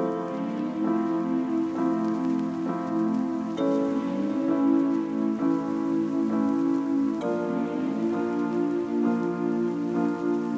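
Lo-fi background music: soft pitched notes and chords, a new note about every second, the phrase repeating about every three and a half seconds over a faint steady hiss.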